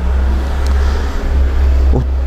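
A loud, steady low rumble with a fainter hiss over it, starting suddenly.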